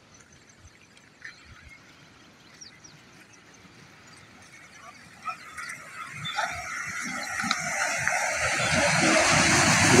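Floodwater rushing through a washed-out road and bridge breach. It is faint at first and grows steadily louder over the second half. A few faint high chirps come early on.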